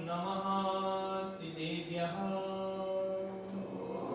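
A man's voice chanting a mantra in long held notes, the pitch stepping from note to note. The chant stops just before the end.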